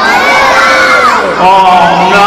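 Audience of children shouting together, many high voices overlapping in long calls, warning the performer that something is creeping up behind him.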